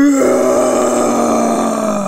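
A human voice imitating a lion's roar: one long, rough growl held at a steady pitch.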